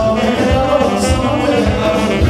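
Live band music with a saxophone playing over a steady drum beat, with singing.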